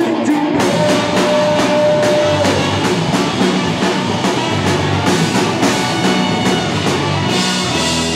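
Live ska-punk band playing loudly: trumpets, saxophone and trombone over drums, bass and electric guitar, with a steady drum beat. One long held note sounds from about half a second in for some two seconds.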